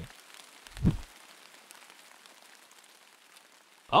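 Faint rain: a soft hiss of falling rain with scattered fine drop ticks, the downpour of a desert flash-flood storm. A single short low thump comes about a second in.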